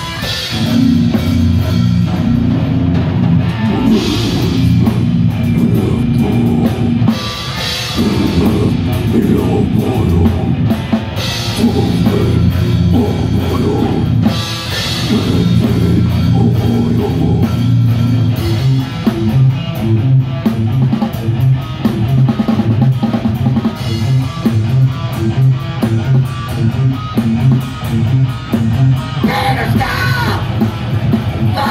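Live death metal band playing loudly without vocals: distorted guitars, bass and drum kit, with cymbal crashes every three to four seconds in the first half, then a choppier, steady chugging rhythm.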